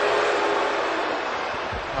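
Arena crowd noise: a steady roar of many voices that slowly dies down, with a low thump near the end.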